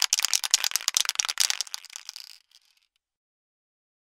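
Graffiti spray paint can being shaken, its metal mixing ball clicking and rattling rapidly inside the can. The rattling thins out and stops about two and a half seconds in.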